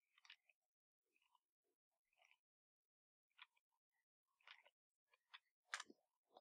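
Near silence, with a few faint, short sounds from a film playing in the background, which include a kid yelling; the strongest comes near the end.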